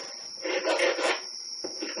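Metal file being stroked across the edge of the aperture ring of a non-AI Nikkor 50mm f/2 lens, starting about half a second in: a run of short scraping strokes as a notch is begun for an AI conversion.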